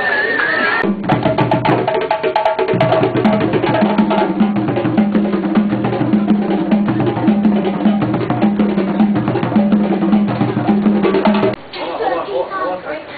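Drum and percussion music with a steady beat, low and higher drum notes alternating under a busy clatter of sharp wood-block-like strikes. It starts about a second in and cuts off suddenly just before the end.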